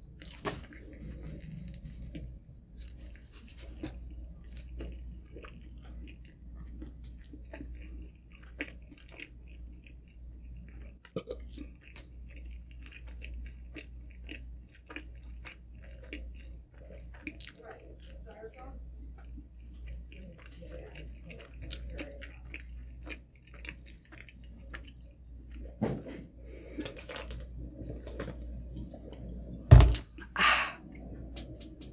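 A person chewing a large last mouthful of pepperoni pizza close to the microphone, with many small mouth clicks, over a low steady hum. There is a short louder sound right at the end.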